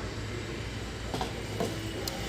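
Metal paint cans set down into a wire shopping cart: two light knocks a little after a second in, over a steady low hum.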